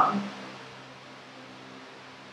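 Electric fan running steadily: an even hiss with a constant low hum.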